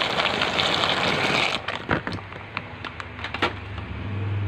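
Dry macaroni poured into a pot of boiling water: a dense, rushing patter for about a second and a half, then quieter, with a few sharp clicks.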